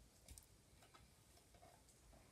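Near silence with a few faint clicks from hands working slime in a clear plastic tub.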